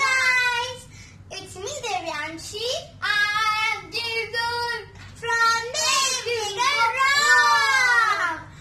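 Two children singing together in high voices, in short phrases with a longer held phrase near the end.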